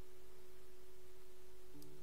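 A steady single-pitched electrical tone with a low hum beneath it, background noise of the recording chain; a second, lower tone joins near the end.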